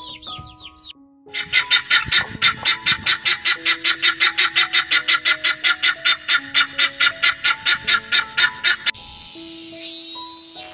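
Helmeted guineafowl chattering: a loud, rapid run of harsh calls, about five a second for some seven seconds, over background music. It starts just after a short bout of chick peeping, and a cicada's high buzzing takes over near the end.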